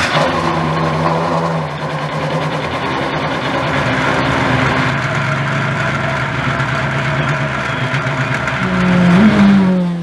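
Chevrolet Corvette Z06 GT3.R race car's V8 engine idling steadily. Its note rises and falls briefly near the end.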